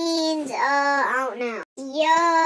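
A child's voice singing a string of long held notes, each arching gently in pitch, with a brief break in the sound just before the end.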